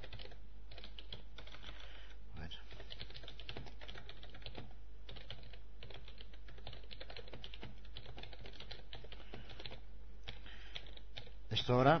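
Continuous typing on a computer keyboard: a quick, steady run of keystrokes.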